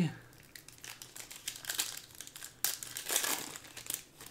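Foil wrapper of a Panini Prizm Monopoly basketball card pack crinkling in irregular crackles as hands pull it open, loudest about three seconds in.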